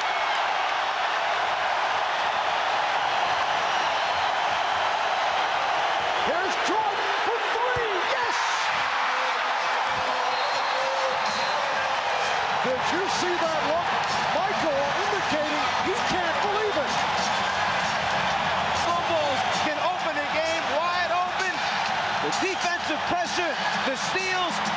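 Basketball arena crowd noise, a loud steady roar of cheering throughout, with sneakers squeaking on the hardwood court and the occasional thud of the ball bouncing.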